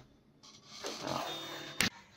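A person's breath, close on the microphone, begins about half a second in, followed by a single sharp click near the end.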